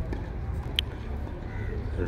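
Low steady outdoor rumble, with one short sharp click a little under a second in.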